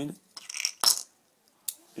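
Metal airsoft pistol magazine being handled after loading BBs: a brief scraping rattle, then one sharp metallic click a little under a second in, and a faint click near the end.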